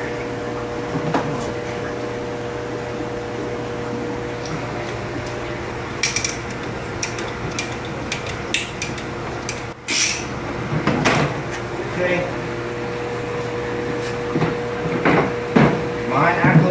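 A ratcheting tubing cutter clicking in quick snaps as it cuts through clear vinyl hose, followed by a knock and some handling noise. A steady hum runs underneath.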